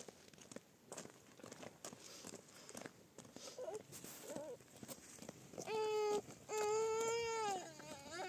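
Footsteps on a dry, stony dirt track, then two long high calls near the end, the second about a second long and falling in pitch as it ends.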